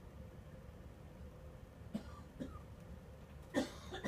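A person coughing: two small throat sounds about halfway through, then one loud cough near the end, over a low steady room hum.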